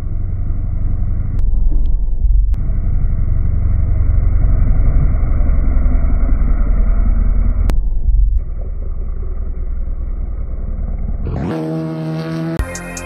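Kawasaki ZX-10R sport bike's inline-four engine running as the bike is ridden hard through bends, heard as a muffled, dull low rumble. The sound jumps abruptly a few times where short clips are joined.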